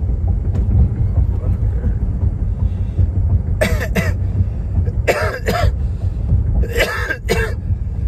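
A man coughing in three bouts, about three and a half, five and seven seconds in, from the smoke he has just drawn in, over the steady low rumble of a moving car's cabin.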